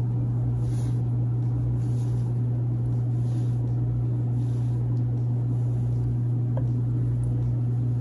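A steady low hum, with a few faint soft rustles of wool yarn being drawn through crocheted fabric by hand.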